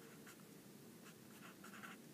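Faint scratching strokes of a felt-tip marker writing on paper.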